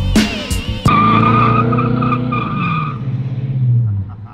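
Music with sharp beats for the first second, then a slammed 1967 Cadillac doing a burnout: the tyres squeal in a steady high wavering tone over the engine running hard. The squeal stops about three seconds in, and the engine note falls away near the end.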